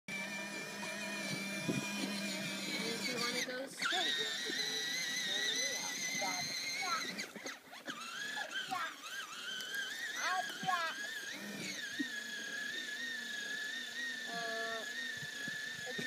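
Electric motor and gearbox of a toddler's battery-powered ride-on toy vehicle running with a steady high-pitched whine.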